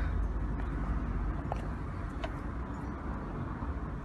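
Steady low background rumble with a couple of faint ticks.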